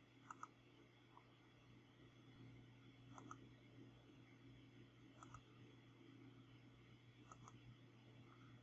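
Faint computer mouse clicks: four quick double clicks about two seconds apart, over near-silent room tone with a low steady hum.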